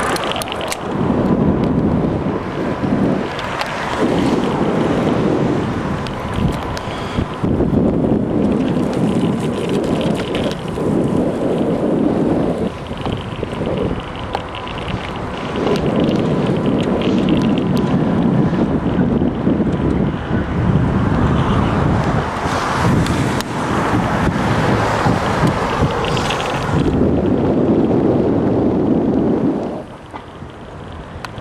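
Wind buffeting the microphone of a camera on a moving bicycle: a loud, rough noise that surges and eases every few seconds. A faint steady high tone runs under it through the first half.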